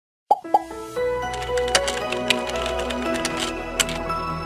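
Intro sound effects and music: two quick plops in the first half second, then light music with sustained notes and a few sharp clicks.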